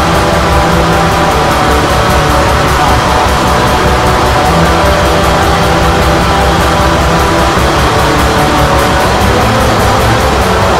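Instrumental atmospheric black metal played loud and steady: a dense wall of distorted electric guitars over fast, even drumming, with no vocals.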